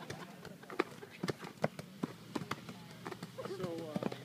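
Irregular sharp smacks of hands hitting and catching volleyballs as many balls are thrown back and forth over a net, about two or three a second. Players' voices call in the background, rising near the end.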